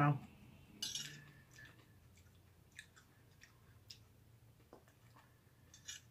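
A person eating lasagna: a short mouth sound about a second in, then a few faint, scattered small clicks of a metal fork on a china plate.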